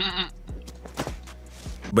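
A man's short quavering laugh, over a low steady hum that carries on quietly after the laugh ends.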